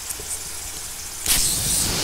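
Plastic garden hose spray nozzle turned on about a second in: water suddenly jets out in a wide spray with a loud, steady high hiss.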